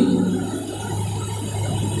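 A pause in a man's amplified speech, filled by a steady low hum and room noise; the tail of his voice fades out at the start.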